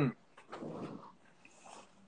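A man spitting stale trading-card bubblegum into its wax-paper wrapper. About half a second in there is a click, then a short breathy splutter, followed near the end by a fainter hiss of breath and paper.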